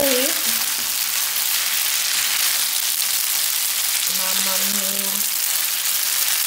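Linguine and diced pancetta sizzling steadily in a hot frying pan while being stirred through with a wooden spoon.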